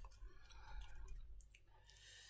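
Faint wet clicking mouth sounds of someone chewing sour mango eaten with chili salt, a few scattered clicks over two seconds.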